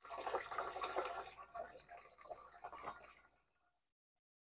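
Liquid poured from a plastic jug into the plastic tank of a Chapin backpack sprayer, splashing through the strainer basket in its filler opening. The pouring is fairly quiet and uneven, and fades out a little after three seconds in.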